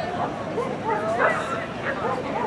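Dogs giving short, sliding, high-pitched calls, with people talking underneath.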